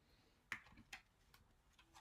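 A few faint, irregular clicks and taps of tarot cards being picked up and handled on the table, the sharpest about half a second in.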